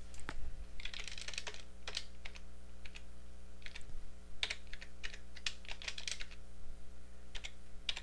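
Computer keyboard being typed on in short, irregular bursts of key presses while numbers are entered, over a steady low electrical hum.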